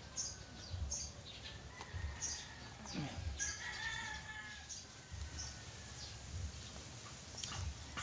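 A rooster crowing faintly, one drawn-out crow about two to four seconds in.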